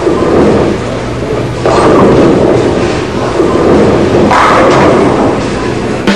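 High-performance bowling ball rolling down a wooden lane with a deep, continuous rumble. About four seconds in comes a brighter crash as it strikes the pins.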